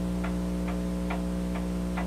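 Wall-shelf clock ticking steadily, a little over two ticks a second, over a steady electrical hum.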